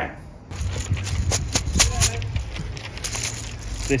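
A raffle draw bag being handled close to the microphone, with an uneven run of sharp crackles and clicks as the numbers inside are rummaged. A low steady rumble runs underneath.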